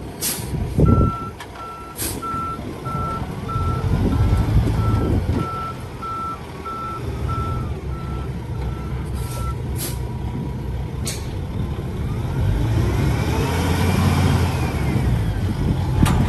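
Dump truck backup alarm beeping evenly, a little over once a second, for about the first nine seconds, signalling the truck is in reverse, over the rumble of the Kenworth T880's PACCAR diesel. Short hisses of air come near the start and again around nine to eleven seconds. In the last few seconds the diesel pulls harder, its pitch rising and falling.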